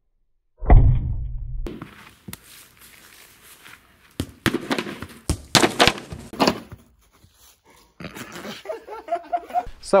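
A ball striking a tempered-glass TV front panel: one heavy thump about a second in that dies away over about a second, then a run of sharper knocks a few seconds later.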